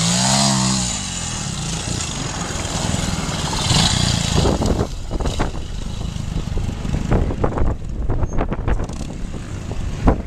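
Vintage trials motorcycle engine with a short rise and fall in revs in the first second, then running at low revs, with irregular short crackles and knocks in the second half.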